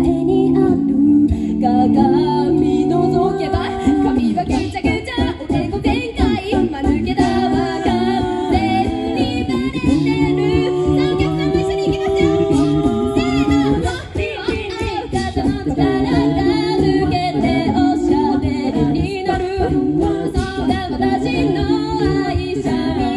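Mixed-voice a cappella group singing in several-part harmony through a PA, with held chords and a steady beat of vocal percussion underneath.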